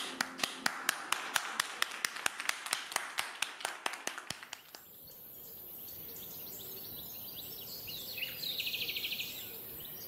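Applause as the song ends: hand claps, about four or five evenly spaced claps a second, dying away about four and a half seconds in. Then a faint steady hiss, with faint bird-like chirps near the end.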